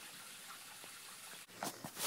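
Faint steady hiss of room tone, broken by a sudden drop about a second and a half in, then a few brief soft sounds near the end.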